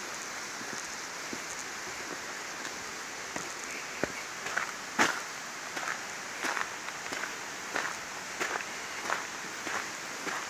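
Footsteps of a person walking along a woodland path, one step about every two-thirds of a second from about four seconds in, the one about halfway through the loudest, over a steady background hiss.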